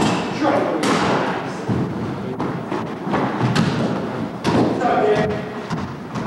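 A basketball thudding on a hardwood gym floor and off the backboard during a pickup game: about five sharp knocks, the loudest about a second in, each ringing on in the large hall, with players' voices underneath.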